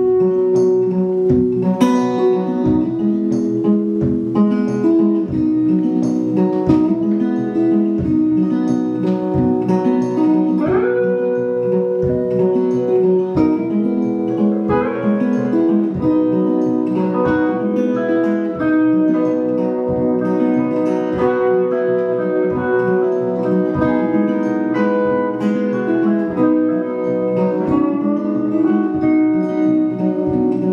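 Acoustic guitar and electric guitar playing an instrumental intro to a country-blues song, with a steady low beat underneath and a few sliding notes.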